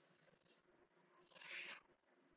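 Near silence, with a faint short hiss at the start and again about a second and a half in.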